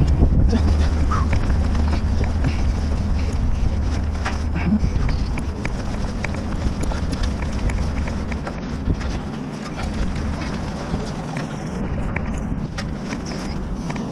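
Gloved hands and boots on the steel rungs of a tower crane's mast ladder, giving scattered clicks and knocks as the wearer climbs. Under them is a low rumble of wind on a body-worn microphone, stronger in the first half.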